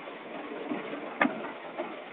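Steady running noise of a heavy machine's engine, with a single sharp knock a little after a second in and a few faint ticks.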